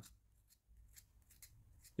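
Faint, soft scrapes of a small craft knife shaving wood from a pencil point, a few short ticks spread over the two seconds. The knife is evening up a point that a sharpener left lopsided.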